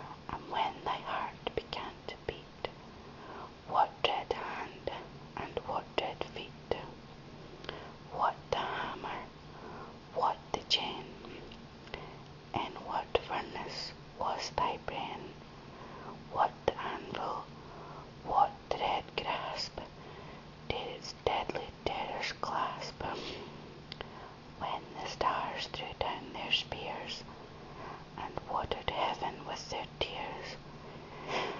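A person whispering, reading poetry aloud in a continuous run of soft whispered words with hissing consonants.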